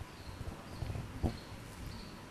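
Faint, irregular knocks and taps, several a second, over low room noise.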